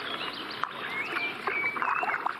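Leaves and branches rustling and a plastic bottle crackling as a hand pulls it out of a bush, with scattered clicks and a few short high-pitched chirps over the rustle.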